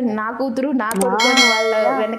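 A bright, bell-like ringing tone with many high overtones starts a little past a second in and rings steadily on, heard over a woman's talking.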